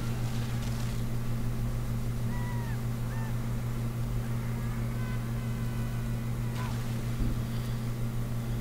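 A steady low hum, with faint, brief whistling tones and glides over it from quietly playing movie audio, and a single click about two-thirds of the way through.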